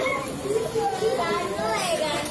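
Speech: voices talking, with a man's voice amplified through a microphone and loudspeaker, and other voices in the background.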